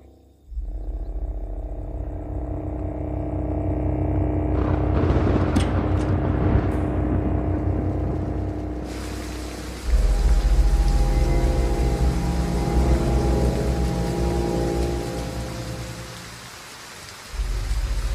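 Heavy rain and thunder under a film score of sustained low tones. The rain builds from about five seconds in, with a few sharp thunder cracks. A deep low rumble comes in about ten seconds in and dies away near the end.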